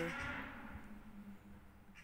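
A pause in a woman's speech: her voice trails off into a breathy exhale that fades over the first second, with a faint low hum dying away, leaving quiet.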